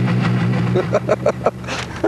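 A man laughing in a run of short bursts, over the steady hum of an idling vehicle engine.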